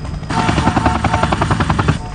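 Helicopter rotor blades chopping loudly in a fast, even beat of about a dozen pulses a second, with an engine whine over it. The sound swells suddenly about a third of a second in.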